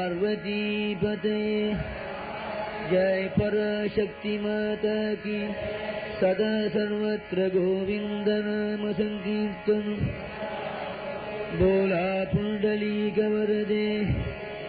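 A devotional chant sung over a steady, held drone, with the sung line rising and falling and breaking every second or so.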